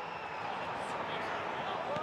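Steady stadium crowd noise, an even hum of many voices without distinct calls.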